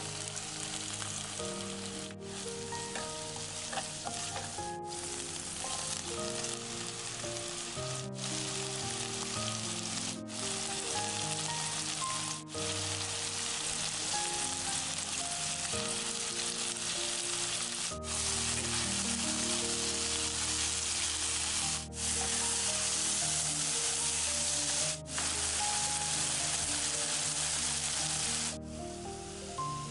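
Scallops and French beans sizzling as they stir-fry in a hot wok, a steady sizzle that breaks off for an instant several times.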